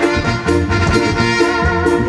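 A live band playing an instrumental passage of a Latin dance tune: electric bass, keyboard and drums over a steady beat.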